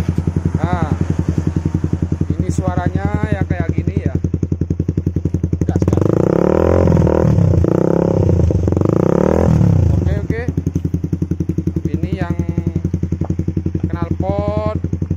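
Honda CB150R StreetFire's single-cylinder four-stroke engine running through a LeoVince aftermarket exhaust, quite loud, idling with an even pulse. About six seconds in it is revved up and back down twice, then settles to idle again.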